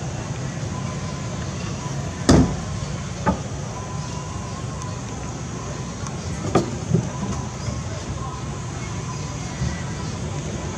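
Steady low background rumble broken by a few short, sharp knocks, the loudest about two seconds in and two more close together late on.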